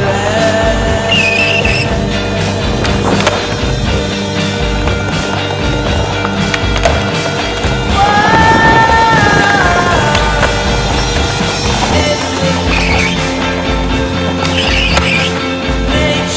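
Skateboard wheels rolling over stone paving tiles, with a few sharp clacks of the board popping and landing, under a song.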